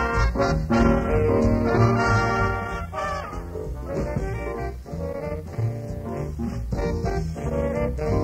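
A small jazz band playing an up-tempo swing number live, on an old tape recording. The ensemble eases back somewhat about three seconds in and builds again near the end.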